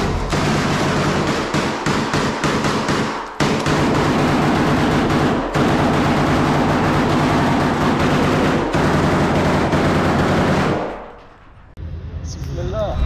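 Sustained automatic gunfire, close and loud, fading out about a second before the end.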